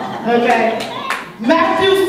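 A woman's raised voice through a microphone, speaking in a preaching cadence, with hand clapping.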